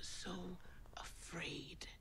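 A woman speaking softly and breathily, her line trailing off.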